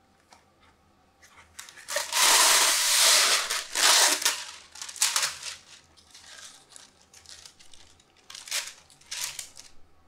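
Baking parchment being pulled off a boxed roll and torn off, a long loud rustle about two seconds in, then shorter crinkling rips as the sheet is handled and cut near the end.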